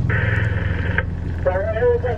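Static hiss from an Aquacom STX-101 diver through-water communication surface unit, cutting off abruptly after about a second. A diver's garbled, narrow-band voice then comes through its speaker. A steady low hum runs underneath.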